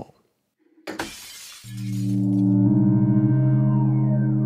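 A brief crashing noise about a second in, then a Moog Matriarch analog synthesizer swells in with a sustained low chord, played through a phaser pedal. More notes join the chord near the end.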